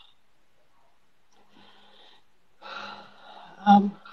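A woman crying: sniffs and shaky breaths as she wipes her nose with a tissue, then a short, louder sob near the end.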